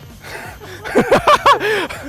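A man chuckling: a few short laughs in quick succession, starting about a second in.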